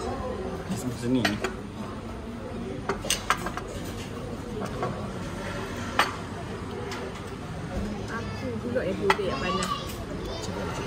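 Spoons and cutlery clinking against ceramic bowls, cups and glasses in a handful of sharp clinks, over a low murmur of voices around a table.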